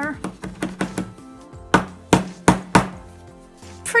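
Small metal hammer tapping metal corner protectors onto a chipboard journal cover: a few light taps in the first second, then four sharper blows close together about two seconds in.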